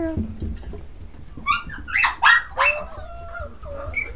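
English Cocker Spaniel puppy yelping and whining: a string of short high-pitched cries starting about a second and a half in, the last one sliding down into a thin whine.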